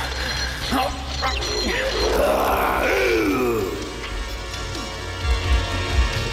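A man's voice groaning and grunting with effort, strongest in a long bending strain in the middle, over dramatic background music with a steady low drone: a man straining against his chains.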